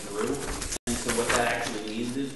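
Speech in a meeting room, picked up by the room's microphones, with the audio cutting out completely for a split second just under a second in.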